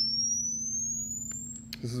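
Pure sine tone of an audio frequency sweep played through a speaker, gliding steadily upward from about 6 kHz and fading, then cutting off near the end; the high tone is piercing.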